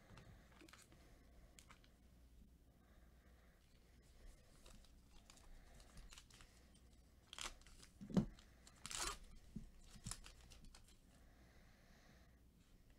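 Foil trading-card pack being torn open by gloved hands: a few sharp rips and crinkles of the wrapper between about seven and ten seconds in, the loudest a sharp snap just after eight seconds, with faint handling otherwise.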